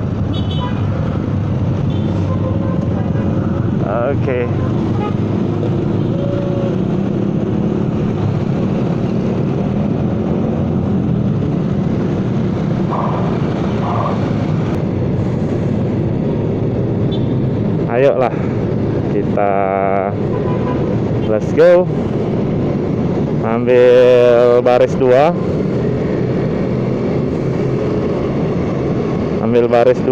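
Steady running noise of a motor scooter being ridden at a moderate speed among other motorcycles in traffic, engine and road noise together. Several short pitched sounds that rise and fall cut through about two-thirds of the way in and again near the end.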